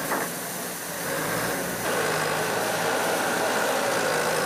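Fire hoses spraying water in a steady hiss, over an engine running steadily; the sound changes character about two seconds in.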